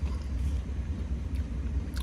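Steady low rumble in a vehicle cabin, with no other event standing out.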